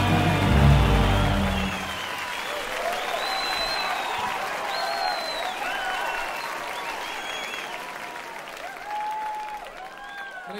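A band's held final chord ends about two seconds in, and a large concert audience applauds, with cheering voices rising over the clapping.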